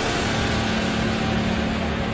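Heavy rain sound effect: a steady, even hiss of falling rain with a low rumble beneath it.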